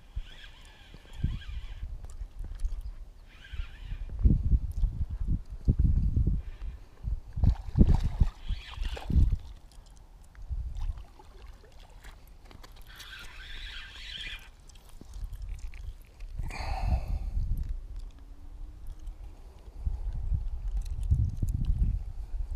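Wind buffeting the microphone in uneven gusts, with a spinning fishing reel being cranked in short spells, including while a fish is on the bent rod.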